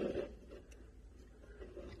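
Faint handling sounds: a couple of small clicks as thin wire test leads are fitted into a Milwaukee M12 battery's terminals.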